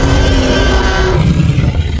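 Loud end-card logo sting: a dense, rumbling, engine-like rush with a few held musical tones over it, starting abruptly just before and running on steadily.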